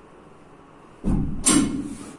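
A bar loaded with about 305 kg of tyres and weight plates set back down on the floor: a heavy low thud about a second in, then a sharper clank half a second later.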